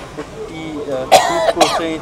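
A person clearing their throat: a loud burst about a second in, then a second, shorter one.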